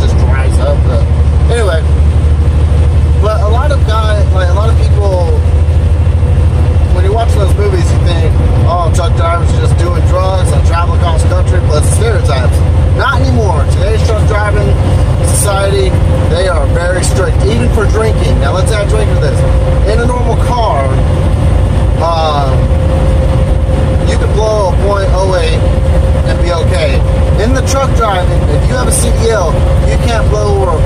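Steady low drone of a truck's diesel engine and tyre noise heard inside the cab at highway speed, with a faint thin whine that gets stronger in the second half.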